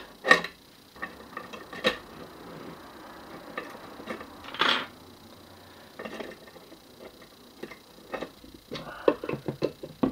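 Light metal clicks and taps of steel parts being handled and fitted onto the base plate of a mechanical slot machine mechanism, with a short scrape about halfway through and a quick run of clicks near the end.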